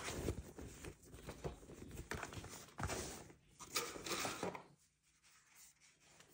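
Faint, irregular rustling and sliding of a non-woven fabric sleeve as a laptop is pulled out of it.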